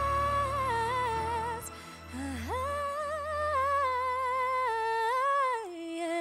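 A woman singing solo into a microphone, holding long wordless notes with vibrato over a low accompaniment. About two seconds in she breaks briefly and swoops up into a new phrase, and the melody steps down lower near the end.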